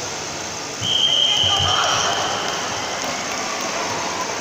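A single steady, high-pitched signal tone starts about a second in and holds for about a second before fading, marking the end of the bout. It sounds over the chatter of a crowded sports hall, with a few dull thuds.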